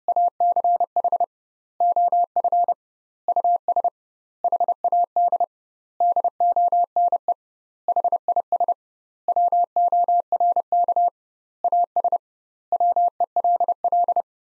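Morse code sent at 30 words per minute as a single steady pure tone keyed on and off in quick dots and dashes, in word groups with about half-second gaps between them (double word spacing). This is the first sending of a practice sentence, most likely "Each of us had done his work as well as he could."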